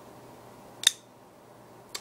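A single sharp metallic click as the Buck Vantage folding knife's blade reaches full open and its liner lock snaps in behind the tang, locking the blade.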